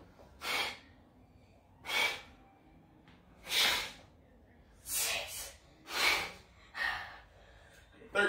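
Forceful breaths from people doing a dumbbell chest press, a sharp exhale with each rep. They come about once a second, one of them doubled.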